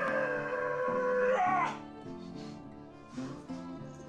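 Background music with a stepping melodic line. Over it, a long held, voice-like cry falls slightly in pitch, then bends upward and breaks off about a second and a half in.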